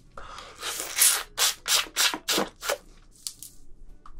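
Fibrous sugar cane stalk being worked at close range: a rough scraping stretch, then a run of about six short rasping strokes, the loudest about a second in.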